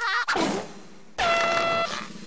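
Cartoon sound effect of a handheld air horn: one short blast of about half a second at a steady pitch, starting a little past the middle.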